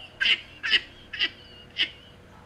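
A man laughing in four short, high-pitched bursts about half a second apart.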